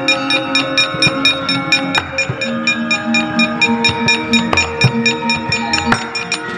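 Javanese gamelan playing a fast accompaniment, with metallophone notes held under a quick, even run of sharp metallic knocks from the dalang's keprak plates, about five or six a second.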